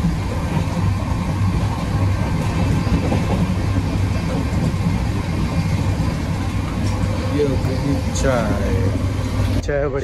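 Passenger train running, heard inside the carriage as a steady low rumble; a voice is heard briefly near the end.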